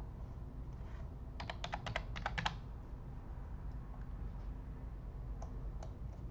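Typing on a computer keyboard, entering a number into a spreadsheet: a quick run of about ten keystrokes a little over a second in, then a few single clicks near the end, over a low steady hum.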